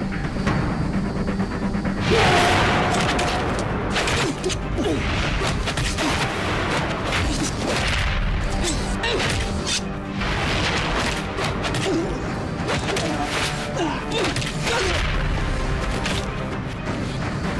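Background score under a rapid run of punch and kick impact effects and whooshes from a staged hand-to-hand fight, the loudest hit coming about two seconds in.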